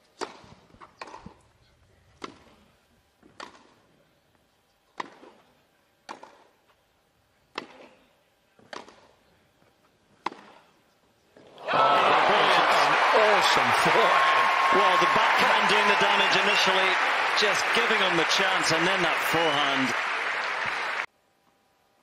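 Tennis rally on a grass court: a serve and then about nine sharp racket strikes on the ball, roughly one a second. Then a loud crowd bursts into cheering, shouting and applause for about nine seconds, which cuts off suddenly.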